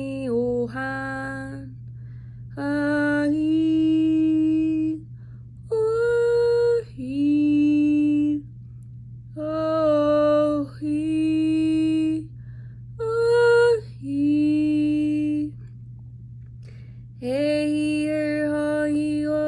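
A woman singing unaccompanied: a string of long held vowel notes, each one to two seconds, with short breaks between them, over a steady low hum.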